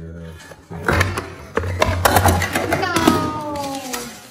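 An ice luge cracking and breaking apart, its ice clattering and knocking against the plastic mold and metal tray in a rapid run of sharp impacts. Voices cry out over it, and a long falling tone slides down near the end.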